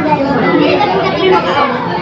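Overlapping voices: people at a table talking over one another, with chatter from a busy restaurant behind.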